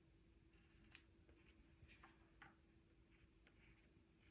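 Near silence, with faint scratching and a few light ticks of a pencil drawing an outline on paper. A faint steady hum runs underneath.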